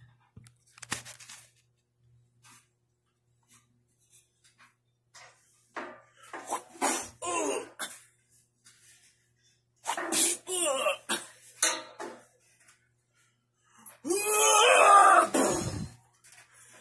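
Three bursts of non-word vocal sounds with pitch sliding up and down, the last and loudest lasting about two seconds near the end, with a few faint knocks in the quieter stretch before them.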